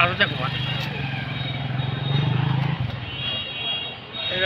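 A vehicle engine running steadily with a low hum, swelling about two seconds in and fading out by three seconds, under voices.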